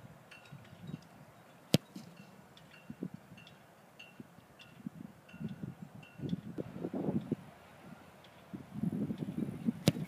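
Two place kicks of a football off a tee. The kicker's foot strikes the ball with a single sharp thump about two seconds in and again near the end.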